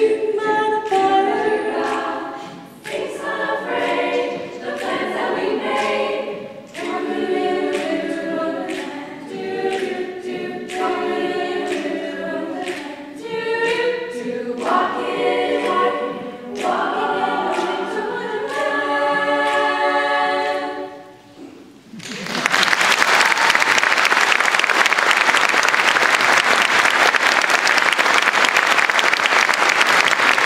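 A cappella choir of girls' voices singing in harmony, the song ending about 21 seconds in. After a brief pause, an audience breaks into sustained applause.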